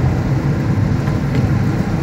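A car driving on an open road, heard from inside the cabin: a steady low rumble of engine and road noise.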